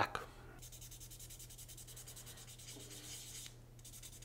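Fine sandpaper rubbed in quick, even strokes over the small clear plastic window insert of a die-cast toy van, sanding out scratches; faint, with a short pause near the end.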